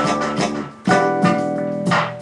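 Electronic music played live by hand on a small hardware instrument: plucked-sounding pitched notes that ring and fade, with a short dip in loudness just before one second in and fresh notes struck right after.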